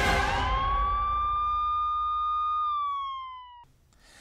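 Siren sound effect in a programme transition sting: a noisy whoosh fades over the first second while a single siren tone rises, holds steady, then sags a little and cuts off suddenly near the end.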